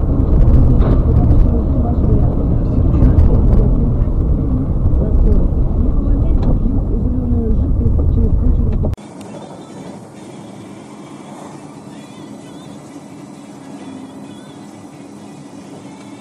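Loud, low rumble of a car driving on a wet road, heard from inside the cabin through a dashcam. About nine seconds in it cuts off abruptly to a much quieter, steady in-car road hiss.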